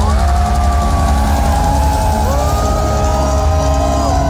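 Heavy metal band playing live through a loud PA: distorted electric guitars hold long sustained notes that slide up and down in pitch over a steady low bass rumble, with no clear drum beat.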